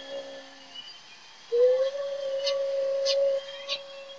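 A young woman's singing voice: a note fades out in the first second, then after a short gap she holds one long, steady note.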